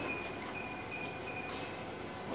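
Steady machinery hum and hiss of a chiller plant room, with a thin high whine running through it. About one and a half seconds in comes a single sharp click as a selector switch on the motor control panels is turned.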